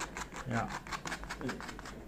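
Sharp knife blade scraping across thick leather in quick repeated strokes, about five a second, roughening the surface so the glue for a patch will hold.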